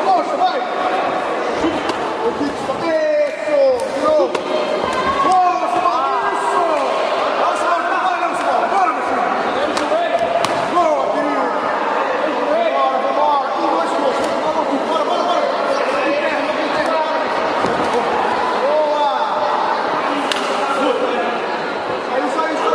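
Overlapping shouting voices around a kickboxing ring throughout, with a few sharp thuds of gloves and kicks landing.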